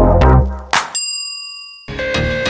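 The end of an electronic intro jingle with heavy bass beats, then a single bright bell-like ding about a second in that rings out for about a second.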